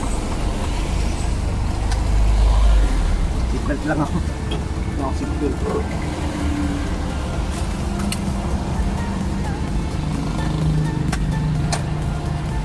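Engine and road noise inside the cabin of an old utility vehicle being driven on a wet road: a steady low rumble.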